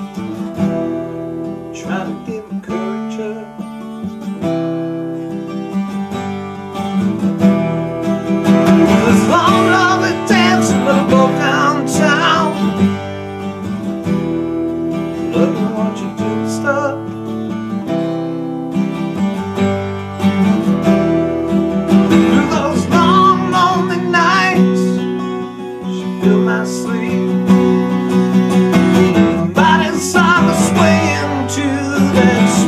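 Acoustic guitar strummed steadily in a slow song, with a man singing passages of the melody over it, about a third of the way in and again after two-thirds.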